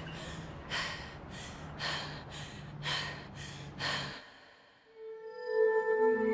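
A woman's heavy, rapid breathing, about one in-and-out breath a second, which breaks off about four seconds in. Near the end a swelling music drone of held tones fades in.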